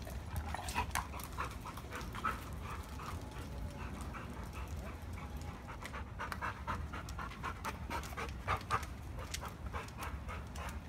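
A dog panting in quick, even breaths over a low steady rumble.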